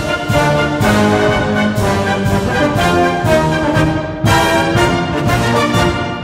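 Military wind band playing a march: brass carries the melody over a steady march beat, with a loud accented chord about four seconds in.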